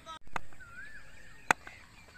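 A cricket bat striking the ball: one sharp crack about one and a half seconds in, off a big hit that goes for six, with a fainter knock before it. A faint wavering whistle-like call sounds between them.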